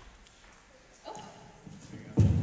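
Faint voices off the microphone in a large hall: a short quiet utterance about a second in and another near the end, with room tone between.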